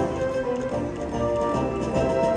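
Video slot machine's free-games bonus music playing through a spin, a tune of short steady notes as the reels spin and come to a stop.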